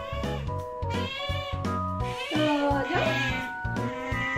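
Asian small-clawed otter giving high-pitched begging squeals, several short calls followed by a longer wavering one, over background music.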